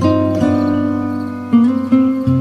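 Background music led by a plucked acoustic guitar, held notes ringing over a low bass line, with new notes struck about half a second in and twice near the end.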